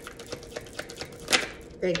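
A deck of tarot cards being shuffled and handled by hand: a quick, irregular run of soft card clicks and flicks, with one louder rustle a little after the middle.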